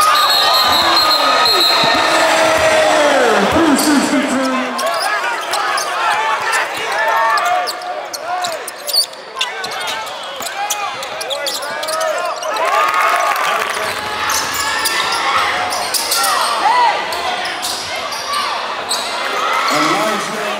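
Live basketball game sound in a gym: sneakers squeaking on the hardwood in many short chirps, a basketball bouncing on the floor, and shouts from players and the crowd, all echoing in the hall.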